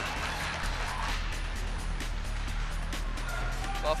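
Background music playing steadily under the highlight footage.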